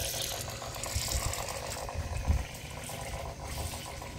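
Small 115 V AC high-pressure diaphragm water pump running steadily with a fast, even buzz, pushing water into a steam boiler that is under about 50 psi. A few low thumps come through underneath.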